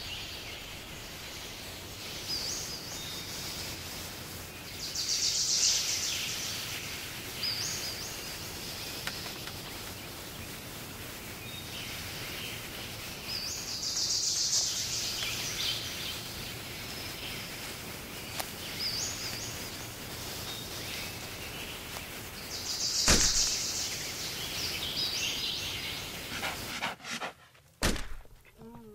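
Outdoor ambience with a steady background hiss, broken three times, about nine seconds apart, by a sudden high hissing burst. The third burst, near the end, comes with a sharp crack and is the loudest.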